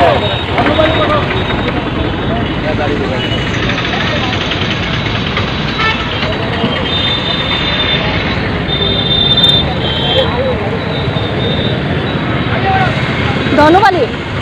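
Busy street traffic with auto-rickshaw and motorbike engines running, a few short horn toots about halfway through, and people talking nearby.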